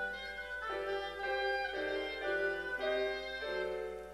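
Clarinet and piano duet: the clarinet plays a melody of held notes that change about every half second to a second over piano accompaniment.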